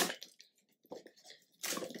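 Small gift boxes and their wrapping being handled: a sharp tap right at the start, then a few faint rustles about a second in. A woman's voice starts near the end.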